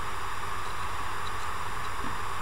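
Steady background hiss with no speech: the recording's noise floor from the microphone and room.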